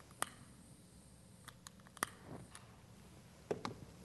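A few sharp clicks of a long-nosed butane lighter being sparked to light methane at the top of a tall glass burner tube, the loudest about two seconds in, over faint room tone.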